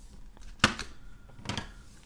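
Hard plastic graded-card holders (SGC slabs) being handled: one sharp clack about two-thirds of a second in, then a softer knock about a second and a half in.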